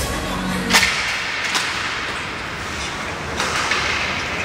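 Ice hockey play: a sharp crack of stick and puck about a second in, then lighter stick clacks over the scraping hiss of skates on the ice.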